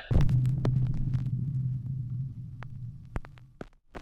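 A low hum that starts suddenly and fades away over about three and a half seconds, with scattered clicks through it.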